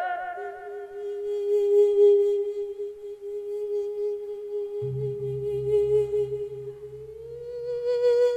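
A monk's long sustained sung note in Isan lae sermon style, held steady on one pitch and rising slightly near the end. A low pulsing beat comes in about five seconds in.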